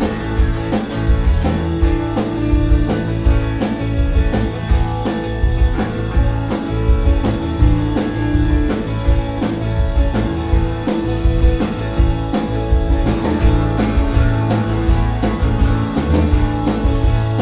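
Live rock band playing: electric guitar over a steady, evenly paced drum beat.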